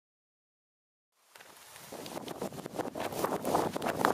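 Silent for about the first second, then outdoor sound fades in: wind on the microphone, with many small crackles and clicks.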